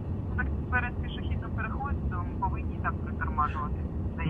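Faint talking in the background over the steady low rumble of street traffic, with a car approaching near the end.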